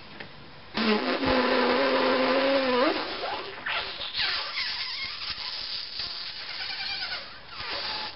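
A person making buzzing mouth noises through puffed cheeks and pursed lips: a steady buzz starting about a second in that glides up in pitch near three seconds, then a rougher, wavering buzz with sliding pitch and a short rising one near the end.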